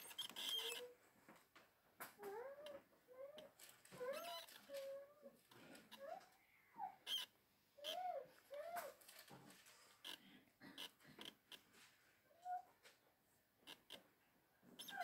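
Faint handling of Bible pages, many soft clicks and rustles, under a string of short, high, voice-like sounds that rise and fall, each under half a second and coming about every half second.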